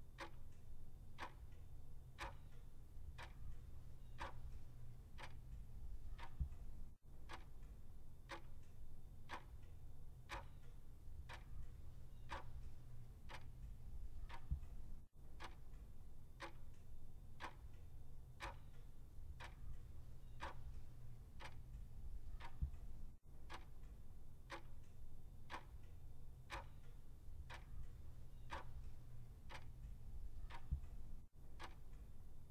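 A clock ticking steadily, about once a second, timing the pupils' answer period, over a faint low hum.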